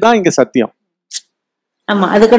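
A man speaking. About two-thirds of a second in he breaks off for roughly a second, with only a brief faint hiss in the pause, then carries on talking just before the end.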